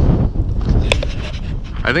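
Gusty wind buffeting the microphone, an uneven low rumble, with a single sharp click about a second in.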